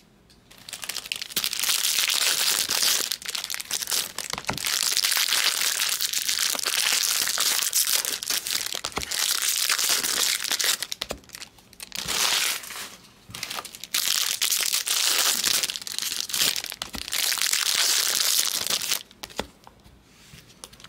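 Foil trading-card pack wrappers crinkling as the packs are handled and opened, in long rustling stretches with brief pauses, stopping about a second before the end.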